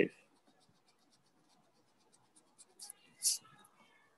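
Faint scratching and ticking, like a pen writing on paper, through a quiet pause. Near the end come a short hiss of breath and some quiet muttered speech.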